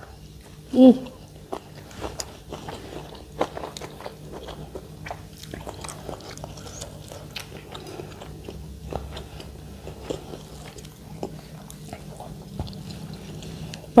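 People eating with their fingers, close to a clip-on microphone: irregular chewing, lip smacks and small mouth clicks throughout, with a short 'mm' of enjoyment about a second in.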